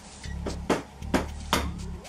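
Background music, with three sharp taps a little under half a second apart in the second half: an egg being knocked against the rim of a bowl to crack it.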